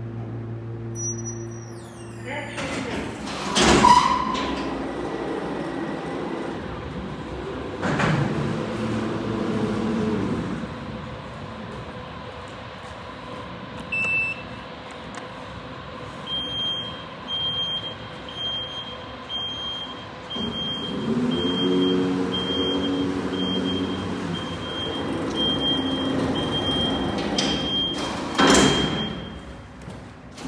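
Car elevator's drive hum, which stops about two seconds in, followed by a clunk as the car settles. Its sliding gate then rumbles and knocks, and a short electronic beep repeats about once a second through the second half.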